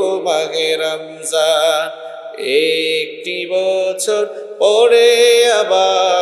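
A man singing an unaccompanied Islamic song into a microphone. He holds long, wavering notes with sliding ornaments, broken by short pauses.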